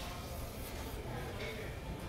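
Restaurant room noise: a steady low hum with faint background voices.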